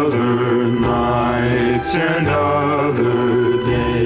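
A slow 1950s-style vocal ballad sung in close harmony, with long held notes over a soft instrumental backing.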